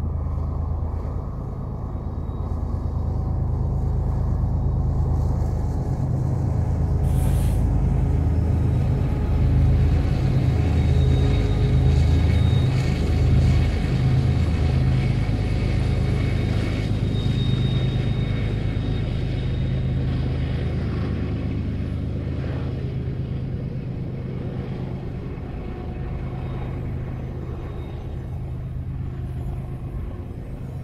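Freight train of double-stack container well cars rolling past at close range, a loud steady low rumble. A brief hiss about seven seconds in.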